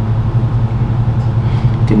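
A steady low hum, loud and unbroken, with no other event on top of it.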